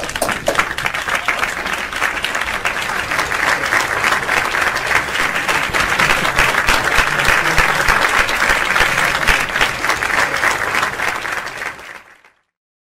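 Audience applauding, a dense patter of many hands clapping that swells a little midway and dies away near the end.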